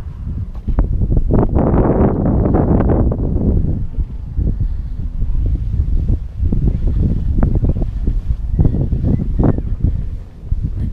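Wind buffeting the camera microphone, a heavy low rumble throughout. It swells into a louder rush about a second in that lasts roughly two seconds.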